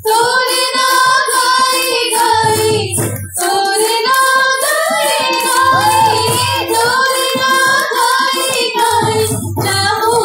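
Sambalpuri folk song: a high voice sings a held, wavering melody over a steady percussion beat of sharp strikes, about three or four a second, with regular low drum pulses.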